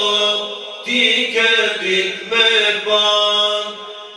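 Men singing an Albanian Islamic devotional song into microphones: long, drawn-out, ornamented vocal lines in a chant-like style, broken by short pauses between phrases and easing off near the end.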